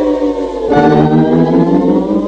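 Soundtrack music: a drumless break in a rock song, with held chords sliding slowly down in pitch, one chord giving way to a second under a second in.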